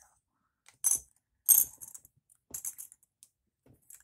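Several sharp little plastic clicks as clear plastic T-top panels are pried off a plastic model car's roof and handled, the loudest about a second and a half in.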